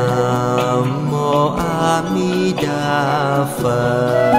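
Devotional Buddhist chant sung over instrumental accompaniment: long held notes that glide from pitch to pitch above a steady low drone.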